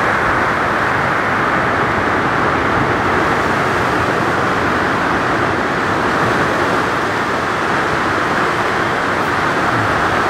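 Ocean surf breaking, heard as a steady, even rush of noise with no pauses or separate events.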